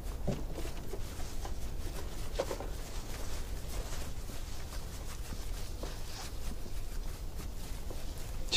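Soft footsteps and rustling of several people walking off through grass, over a low steady rumble of outdoor ambience.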